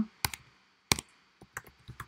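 Typing on a computer keyboard: about half a dozen separate, uneven keystrokes, the loudest one about a second in.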